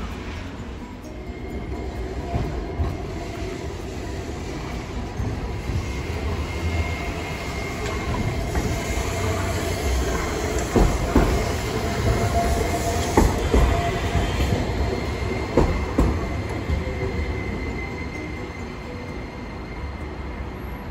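Hiroshima Electric Railway 5100-series Green Mover Max low-floor articulated tram passing close by on street track, growing louder to a peak in the middle and then fading. Its wheels give several sharp clacks on the track while it is closest, over a faint whine.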